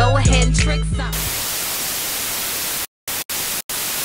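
A hip-hop beat's bass line ends about a second in, and a steady TV-static hiss takes over, dropping out completely three times near the end.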